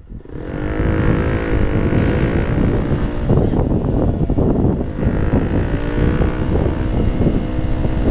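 KTM Duke motorcycle engine running at low speed, its pitch rising briefly in the first couple of seconds, mixed with wind buffeting on the helmet camera's microphone.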